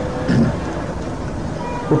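A pause in a man's spoken discourse, filled by the steady background hiss of the recording. A short spoken fragment comes about a third of a second in, and a faint held tone sounds in the second half.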